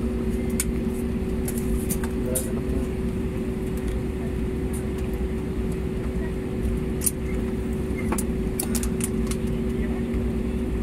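Cabin noise inside an Airbus A320-family airliner taxiing slowly: a steady engine and air-system hum with two held tones over a low rumble, scattered small clicks, and murmured voices.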